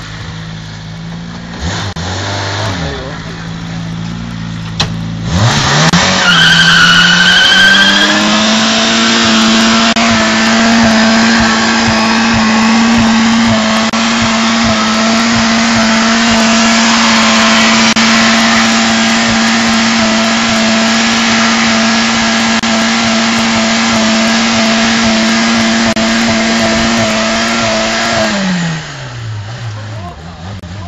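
Car engine running at low revs, then revved hard about five seconds in with a brief high squeal. It is held flat out at a constant, steady pitch for about twenty seconds, then drops back toward idle near the end. The engine is being deliberately run to destruction on a car headed for scrap.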